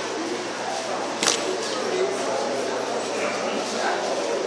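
Murmur of many voices in a large room, with one sharp camera-shutter click about a second in.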